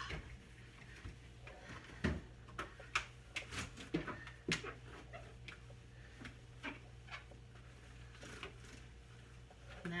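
Light knocks and clicks of hands and a cloth working inside the emptied bottom compartment of a refrigerator, scattered and irregular, most of them a few seconds in, over a low steady hum.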